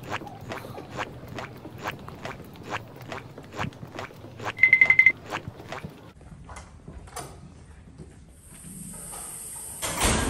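Footsteps on a hard hallway floor, a quick steady pace of about three steps a second, with a short burst of rapid high beeping about four and a half seconds in. The steps thin out after about six seconds, and a steady high hiss comes in near the end.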